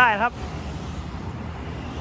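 Steady low rumble of road traffic, following a brief word of speech.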